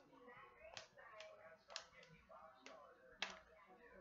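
Quiet handling of a plastic toy clock and its clear plastic wrapping: about five sharp clicks and taps, the loudest a little past three seconds in.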